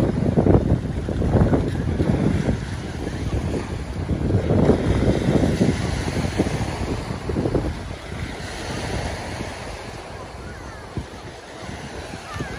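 Small waves breaking and washing up a sandy shore, with wind buffeting the microphone; the wind noise eases over the last few seconds.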